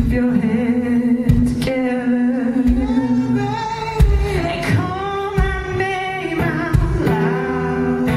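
Live acoustic duet: a woman sings the lead melody through a microphone over a strummed steel-string acoustic guitar.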